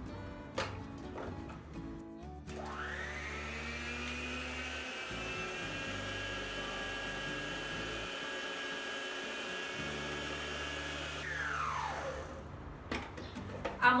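Electric stand mixer with a balloon whisk beating butter and brown sugar into a cream. The motor whine rises as it spins up about two seconds in, runs steadily, then winds down near the end.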